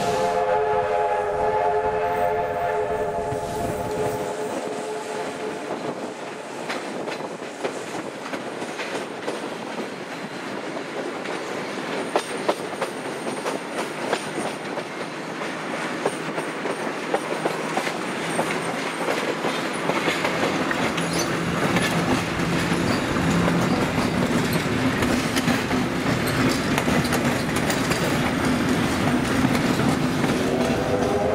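A train sounds a whistle chord of several notes for about four seconds. Then comes the continuous rumble of a moving heritage train, with wheels clicking over rail joints and points. The rumble eases for a while, then grows louder again with a steady low hum in the second half.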